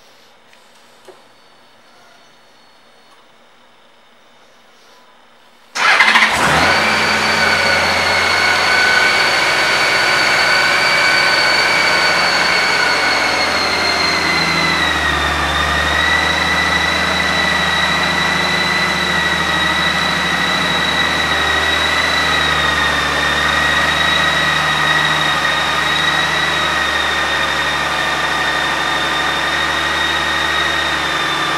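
A 2016 Honda Gold Wing's flat-six engine is started with a faint click about a second in and catches suddenly about six seconds in. It then idles steadily with a whine, and the pitch drops slightly about fifteen seconds in.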